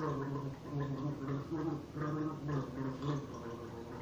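A man gargling a mouthful of water while voicing a song's tune through it: a string of short pitched notes that stops about three seconds in.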